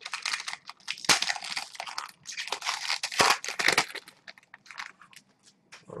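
Foil wrapper of a trading-card pack being torn open and crinkled by hand, in loud rustling bursts for about four seconds. Fainter handling noises follow as the cards are pulled out.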